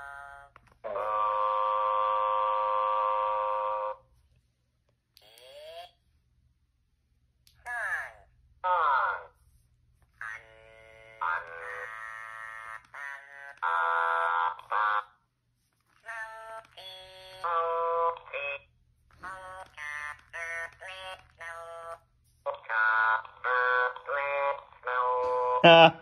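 Electronic plush toy's sound chip playing through its small speaker. It holds one buzzy electronic note for about three seconds, then gives short sliding chirps and choppy snippets of electronic voice and melody, separated by brief pauses.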